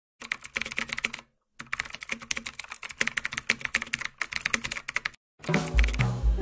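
Rapid, irregular clicking of keys, like typing on a computer keyboard, broken by two short pauses. Music comes back in near the end.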